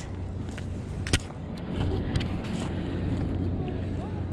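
Crab-pot rope being hauled hand over hand over a wooden pier railing, with a steady rumbling noise underneath and a single sharp click about a second in.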